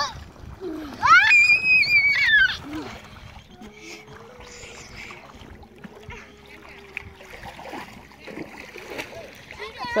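Lake water splashing as a child slides off the side of an inflatable boat into the shallows. Shortly after comes a loud, high-pitched shriek from one of the children, about a second and a half long. After that there is quieter sloshing around the boat.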